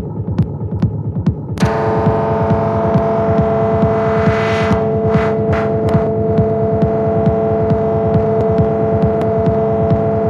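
Live electronic music from hardware synthesizers: a rumbling kick-drum pattern under regular ticking hi-hats. About one and a half seconds in, a loud sustained synth drone of steady tones comes in, with a filtered noise sweep that brightens and then pulses a few times around the middle.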